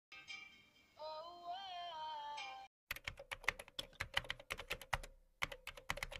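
A snatch of a pop song with a sung, wavering held note, cut off abruptly after a couple of seconds. Then a quick run of smartphone keyboard tap clicks, about six a second, with a short pause near the end.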